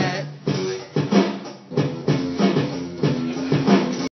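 Electronic drum kit being played, with bass drum kicks striking at an uneven pace of about one or two a second and pitched music alongside.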